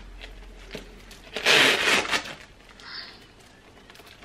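Handling noise from a quilted faux-leather purse and its metal chain strap being adjusted: light rustling and clicks, with one louder rustle about one and a half seconds in.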